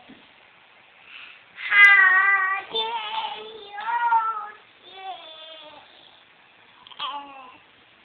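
A toddler girl singing an improvised song in nonsense syllables, in a high wavering voice. A loud phrase of about three seconds starts a couple of seconds in, a quieter phrase follows around five seconds, and a short one comes near the end.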